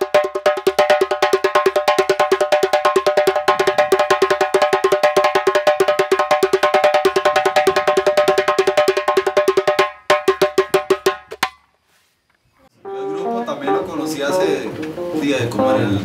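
Djembe played with bare hands in a fast, even run of strokes with a ringing head tone, broken by a short pause near the middle. The drumming stops, and after about a second of silence a man's voice with low notes comes in near the end.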